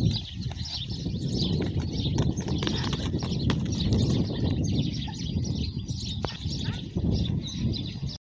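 Many small birds chirping continuously over a steady low rumble, with a couple of sharp clicks.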